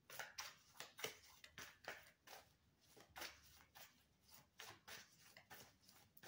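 Tarot cards counted off a deck one at a time, a soft snap or flick with each card, about two to three a second.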